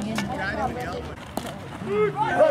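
A baseball bat hitting a pitched ball: a single sharp crack about a second and a half in, over spectators' chatter.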